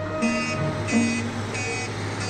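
Ambulance reversing, its back-up alarm beeping evenly about twice a second over a low, steady engine hum.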